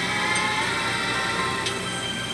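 Soft drama background music with long held notes, played through a television speaker.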